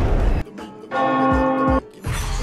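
A loud noisy sound cuts off sharply, then a single bell-like chime rings steadily for about a second and stops abruptly. It is part of an edited music soundtrack.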